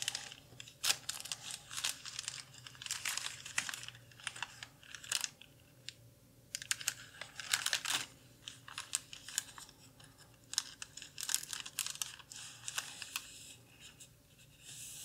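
Clear plastic negative sleeve pages crinkling and rustling under the fingers as they are handled, in irregular clusters of crackles and ticks with short quiet gaps.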